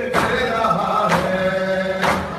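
A nauha chanted by men's voices in unison on held notes, with the crowd's matam, hands striking chests together, landing about once a second, twice here.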